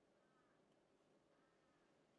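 Near silence, with two faint, short calls from a distant bird, the first right at the start and the second about a second and a half in.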